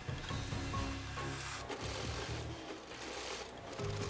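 Background music with an industrial sewing machine stitching through heavy camouflage fabric.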